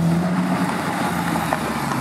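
Honda Civic Type R's turbocharged four-cylinder engine running steadily, its note dropping lower near the end.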